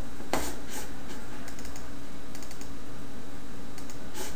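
Scattered light clicks from a computer mouse and keyboard: one sharper click just after the start, then a few small clusters. They sit over a steady low hum and hiss.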